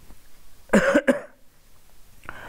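A person coughing, one sudden cough in two quick bursts about a second in.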